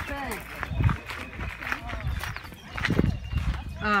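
Indistinct voices of people talking, with a couple of low thumps about a second in and near three seconds.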